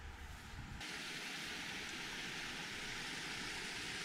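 A small forest creek's running water: a steady hiss that starts abruptly about a second in, after a faint low rumble.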